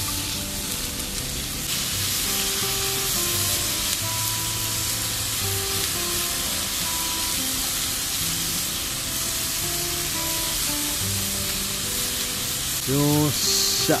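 Chicken pieces sizzling as they fry in a pan, stirred with chopsticks; the sizzle grows louder about two seconds in.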